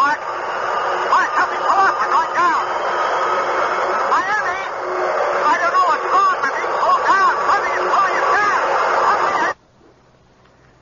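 Radio-drama sound effect of an airliner's radio transmission breaking up into loud static with rising-and-falling electronic warbles and a steady whine, cutting off abruptly near the end as contact with the plane is lost.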